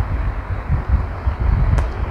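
A low, uneven rumble with a faint click near the end.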